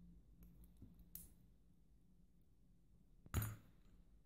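Faint metal clicks and taps from a Cisa half euro lock cylinder being worked with a pick while it is taken apart, with one louder clack a little over three seconds in.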